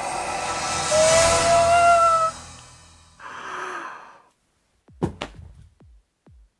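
Closing music and sound effects of a film trailer, a sustained tone rising slightly under a hiss, fading out just after two seconds in. About three seconds in comes a short breathy exhale like a sigh, then near the end a few low thumps.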